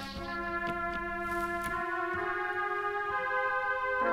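1974 Solina/ARP String Ensemble playing held chords on its horn voice, the chord changing twice.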